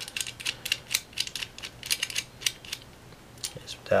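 Quick, irregular light metallic clicks and ticks of bicycle chainrings and small screws being handled and fitted by hand, thinning out near the end.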